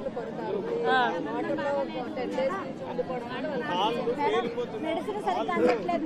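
Several people in a crowd talking at once, overlapping voices with no single clear speaker: speech only.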